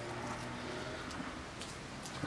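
Faint, steady outdoor background noise with no distinct event, in a pause between words.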